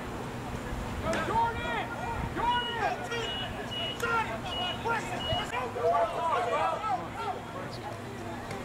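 Several men's voices shouting and calling out at once across an open football field, overlapping and unclear, with no single speaker standing out.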